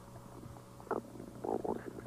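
A pause in a man's speech over a steady low hum in the recording, with a brief "um" about a second in and talk starting again near the end.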